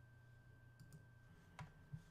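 Near silence with a few faint mouse clicks, the loudest about one and a half seconds in.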